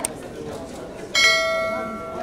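Edited-in subscribe-button sound effect: a short mouse click, then about a second later a bright bell ding that rings on and fades away.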